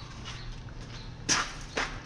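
Two short knocks or clatters of gear being handled, a sharper one a little past halfway and a smaller one near the end, over a quiet room.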